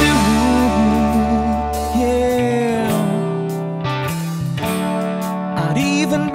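Band recording of a rock song in a guitar-led passage: held guitar notes, some bending and wavering in pitch, over a sustained bass line.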